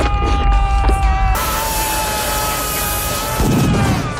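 Film soundtrack: a long held high note that sags slightly and fades near the end, over a low rumble, with a loud rushing noise cutting in suddenly about a second and a half in.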